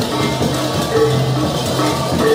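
Balinese gamelan music: bronze metallophones and gongs in a fast, dense pattern of metallic strikes over recurring sustained low notes.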